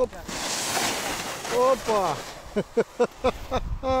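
Wind rushing over the microphone for about the first second and a half, then several short, gliding vocal exclamations.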